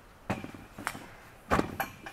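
A few short knocks and bumps of handling at a workbench, about four in two seconds, the loudest about one and a half seconds in.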